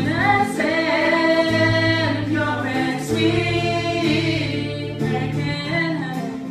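A woman singing long held notes with a waver in them, in two phrases, over acoustic guitar played live.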